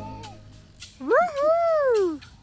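Toddler's drawn-out vocal squeal while being swung, rising and then falling in pitch, starting about a second in and lasting about a second.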